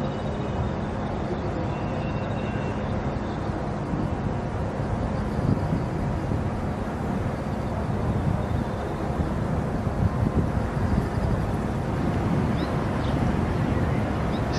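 Steady outdoor background noise, mostly a low rumble that flutters irregularly, as from wind and distant traffic picked up by a handheld camera's microphone.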